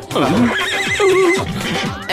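A horse whinnying: one long neigh with a quavering, wavering pitch about half a second in, over background music.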